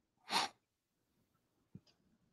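A single brief, breathy burst from a person, such as a sharp breath or a stifled sneeze, about a third of a second in, followed by near silence and a faint click near the end.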